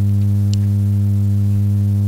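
Steady, loud electrical mains hum from the sound system: an unchanging low hum with a buzzy row of overtones above it.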